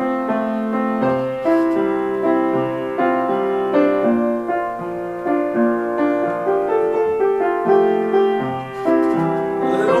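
Upright piano played as a solo instrumental passage of held chords and melody notes. A man's singing voice comes back in at the very end.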